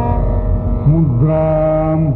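Carnatic vocal music: a male singer in free-tempo sloka singing, over a steady drone. About a second in, he sweeps through a short dipping ornament and then holds a low note. The sound is that of an old, narrow-band recording.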